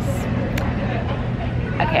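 Indoor café room tone: a steady low hum over a constant murmur of background noise, with a single short click about half a second in.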